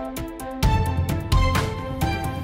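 News-bulletin intro theme music: heavy drum hits with deep bass landing about every 0.7 s, with short bright synth notes between them.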